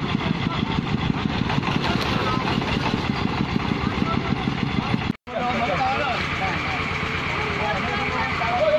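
Single-cylinder diesel engine of a công nông farm vehicle running steadily with a fast, even beat. After a sudden break about five seconds in, a steadier engine hum goes on under voices.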